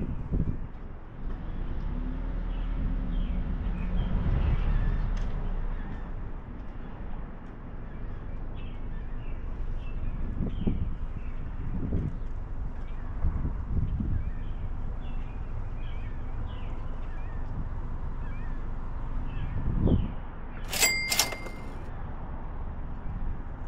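Outdoor street ambience with small birds chirping on and off, a low rumble for a few seconds early on, and a few dull thumps. About a second before the end there is a short, sharp electronic chirp.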